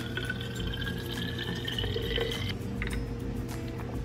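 Water running from a dispenser tap into an insulated water bottle packed with ice cubes, its pitch rising steadily as the bottle fills. The flow stops about two and a half seconds in.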